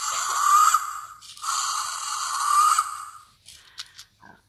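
Fingerlings Untamed Raptor animatronic toy dinosaur playing two long raspy roars through its small speaker. The first roar is already going and ends about a second in. The second runs for about two seconds.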